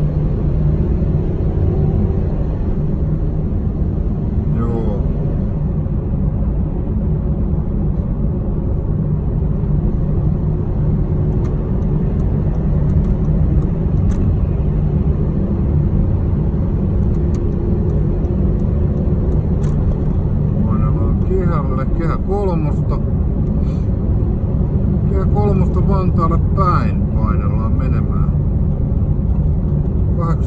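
Steady low road and engine rumble of a car heard from inside its cabin while driving. A voice comes in briefly twice in the second half.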